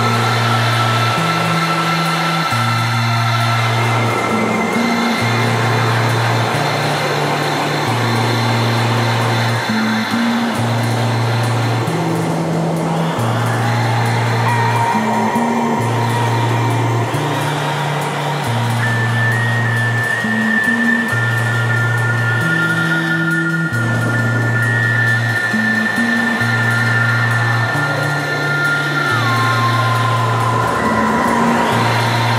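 Live progressive rock band playing an instrumental passage: a repeating bass figure under long held lead notes, one of which bends down in pitch near the end.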